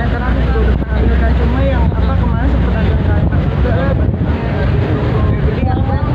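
Several voices talking at close range, partly over one another, with a steady low rumble of wind and handling noise on the microphone underneath.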